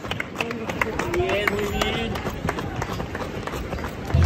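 Running footsteps of shoes striking asphalt at a steady pace, about three steps a second, with other people's voices nearby.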